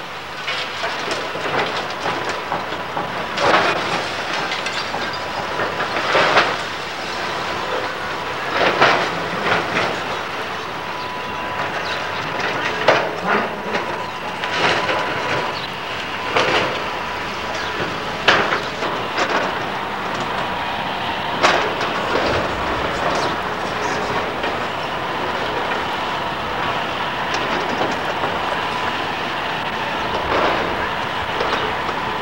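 Hydraulic excavator running steadily while demolishing a brick building, with repeated sharp crashes and clanks of brick, timber and debris breaking and falling, a dozen or so spread through.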